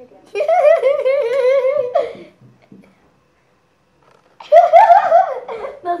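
A boy giggling in a high, rapidly wavering voice for about two seconds, then after a pause of about two seconds a second loud burst of laughter.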